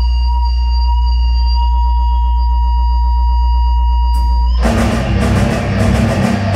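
Live rock band: a held low bass-guitar drone with steady high ringing tones over it, then about four and a half seconds in the drums and electric guitars crash in together at full volume.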